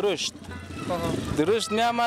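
Men talking in a street interview, with a short stretch of noisy street sound under the voices in the first half.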